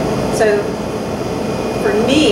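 A woman speaking in short stretches over a loud, steady background noise that fills the room.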